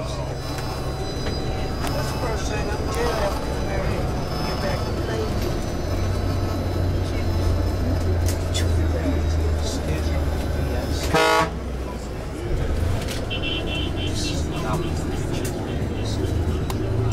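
Bus engine running steadily, heard from inside the cabin, with city street noise. A vehicle horn toots briefly about eleven seconds in, and a higher beeping follows a couple of seconds later.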